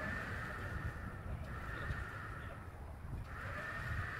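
Faint steady running noise from the car-hauler semi truck and its trailer rig: a low rumble with a hissing whine on top that fades, cuts out for about a second near the end, then comes back.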